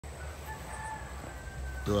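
A rooster crowing faintly, one drawn-out call. A man starts speaking near the end.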